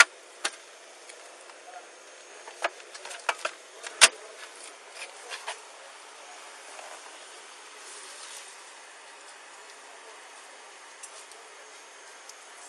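Scattered clicks and knocks of handling and gear at an open car door, picked up by a body-worn camera's microphone, the loudest about four seconds in. After about six seconds only a steady hiss remains.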